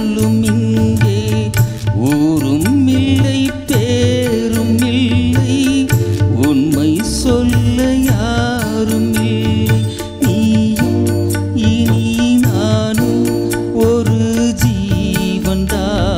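A small live band of keyboard, guitar and hand percussion playing a Tamil film song, with a steady beat under a gliding melody line.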